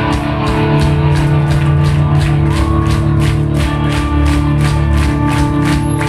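Punk rock band playing live through a hall PA: electric guitars and bass holding chords over a steady drumbeat of about four hits a second.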